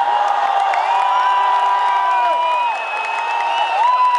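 Large stadium crowd cheering, with many long, drawn-out whoops and shouts held over the roar.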